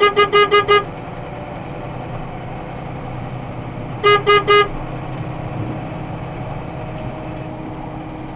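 Vehicle horn, almost certainly the box truck's own, tooted in a rapid string of short beeps, about five a second, ending about a second in. Three more quick toots follow about four seconds in, over the steady road and engine drone inside the cab.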